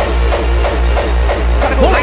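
Hardcore dance music mixed by a DJ, with a heavy bassline pulsing at a fast, steady tempo under a busy mix. An MC's voice cuts in near the end.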